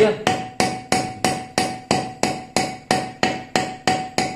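Small hammer tapping on metal over an anvil stake in an even rhythm, about three strikes a second, each strike ringing with a clear metallic tone.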